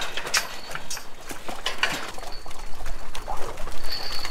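A herd of Jersey cows milling in a yard: scattered irregular clicks and knocks of hooves and bodies shuffling.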